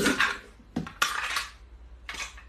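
Packing tape being pulled off its roll in three short pulls, each a sudden ripping screech.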